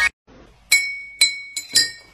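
Four sharp clinks, each ringing briefly at a high steady pitch, the last two close together.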